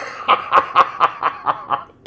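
A man laughing: a quick, rhythmic run of about eight short laughs that dies away near the end.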